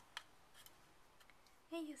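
Near silence, with one faint click just after the start and a few fainter ticks, then a person's voice begins near the end.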